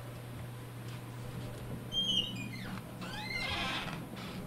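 A door creaking on its hinges as it is pushed open: a high squeak falling in pitch about halfway through, then a second, rougher squeal near the end.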